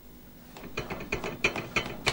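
A quick run of light mechanical clicks, about six a second, starting about half a second in.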